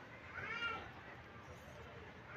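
A faint, short cat meow about half a second in, rising and then falling in pitch.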